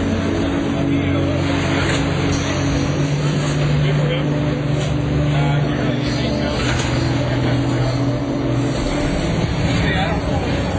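Combat robots' drive motors running in a steady low hum as the robots push against each other, the hum dropping away near the end, over the chatter of onlookers.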